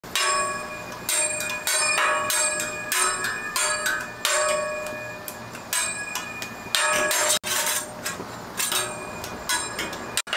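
Metal hibachi spatulas clanging against each other and the steel griddle: a quick, uneven run of sharp strikes, each leaving a short metallic ring.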